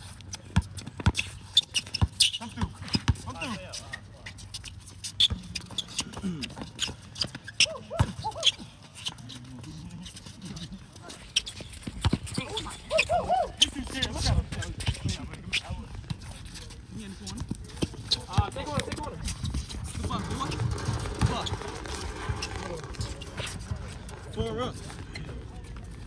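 A basketball dribbled on an outdoor asphalt court: repeated sharp bounces at an uneven pace as players work the ball, with players' voices calling out in the background.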